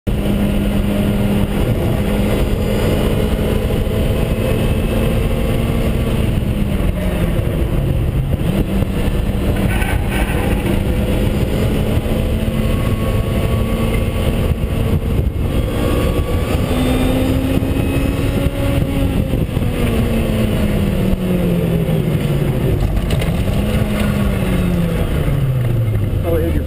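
Lotus Exige's four-cylinder engine heard from inside the cabin at track speed over steady tyre and wind noise, its pitch dipping under braking, climbing and falling again through the corners. Near the end the engine briefly revs up as the clutch goes in, a sign that the driver's foot is on the throttle as well as the brake, then its pitch falls away as the car slows.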